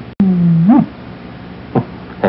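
A man's closed-mouth hum, 'mm', held on one pitch and then rising and falling, lasting under a second after a brief dropout at an edit. A short vocal sound follows near the end.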